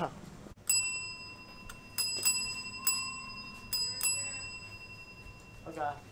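Counter service bell rung six times in quick irregular taps, each strike leaving a bright metallic ring that hangs on for a few seconds.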